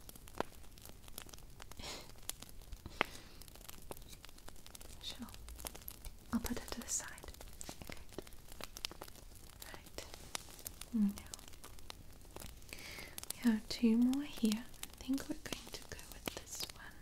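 A woman's soft, quiet murmurs, too faint for words, with a few short voiced sounds, most of them near the end. Light, scattered clicks run throughout.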